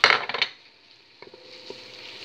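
Wooden spoon clattering and scraping in an enamel pot as flour is stirred into onions softened in oil: a burst of clatter at the start, then quieter, with a couple of light taps and faint sizzling.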